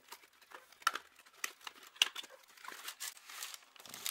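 A small cardboard box and its plastic wrapping being handled and opened during an unboxing: irregular rustling and crinkling with a few sharper clicks, the loudest about one and two seconds in.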